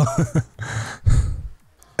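A man's short, breathy laugh: a few exhaled chuckles that die away after about a second and a half.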